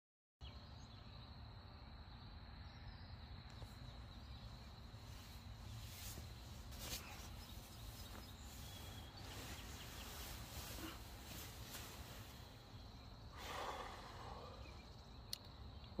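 Faint early-morning outdoor ambience: a steady thin high insect drone over a low background rumble, with a few brief short sounds, the clearest one about two seconds before the end.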